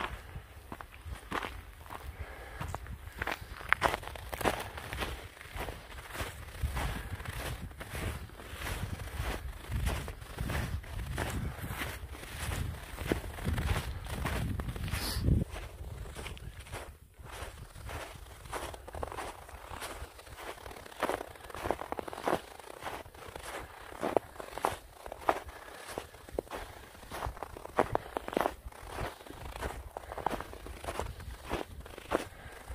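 A hiker's boots crunching on a snow-covered trail over stones and pine needles, in a steady walking rhythm. A low rumble runs under the steps for several seconds in the middle.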